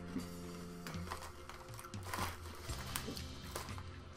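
Quiet background music with a few faint crunches and crinkles from tortilla chips being chewed and the plastic chip bag being handled.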